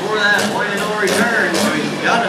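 An announcer talking over a public-address system throughout, with a faint low steady hum beneath the voice.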